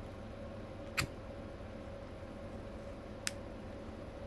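Two sharp clicks of keys pressed on an HP ProBook 640 G2 laptop keyboard, one about a second in and a lighter one near the end, over a steady low hum.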